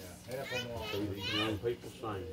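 Children's voices speaking into microphones through a PA system, over a steady low hum.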